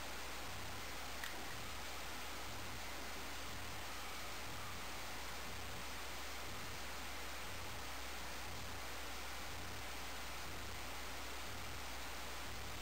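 Steady whir and hiss of a running desktop computer's fans with a low hum underneath, and a faint click about a second in.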